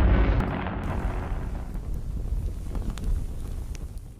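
Fiery boom sound effect from a logo animation: a deep rumbling burst, loudest at the start, that dies away and fades out over the few seconds.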